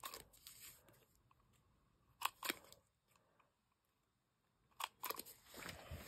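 Faint handling of a small cardstock card on paper: a few short rustles and light taps, a pair about two seconds in and more near the end, with a quiet stretch between.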